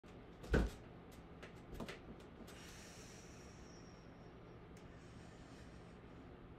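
Body movement on a carpeted floor as a person presses up from a forward fold into a handstand. A dull thump comes about half a second in, then a few lighter knocks and rustles over the next second and a half, and afterwards only faint steady room noise.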